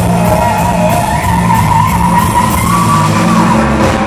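Live blues-rock band playing loud: an electric guitar holds long, wavering lead notes over bass guitar and a steady drum beat.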